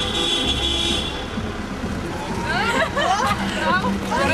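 Music with steady held notes that ends about a second in, then a group of girls' high voices shouting and cheering together.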